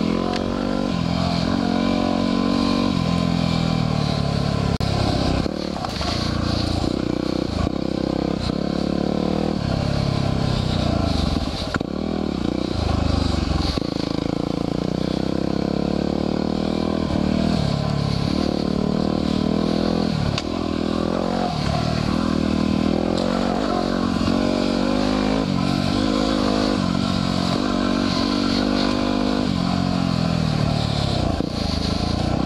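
2010 Yamaha WR250R dual-sport motorcycle's single-cylinder four-stroke engine, under way, its revs rising and falling over and over as the throttle is worked.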